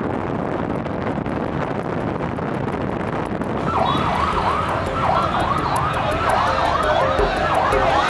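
Steady road and wind noise from a moving vehicle. About four seconds in, an electronic emergency-vehicle siren starts, warbling rapidly up and down in pitch, and the sound gets louder.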